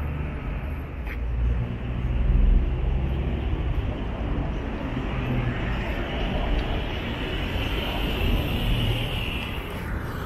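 City road traffic: cars and minibuses driving past with a steady rumble, swelling to its loudest about two and a half seconds in as a vehicle passes close.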